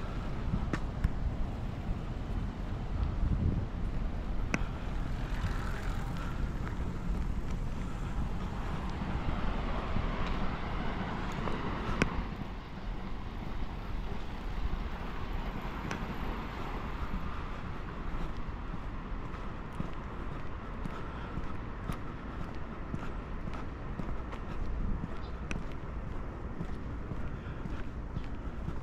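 Street ambience of road traffic, a steady hum that swells for a few seconds and falls away about twelve seconds in.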